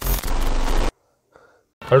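A burst of digital glitch static, a video transition sound effect lasting just under a second, which cuts off suddenly and leaves silence. A man starts speaking near the end.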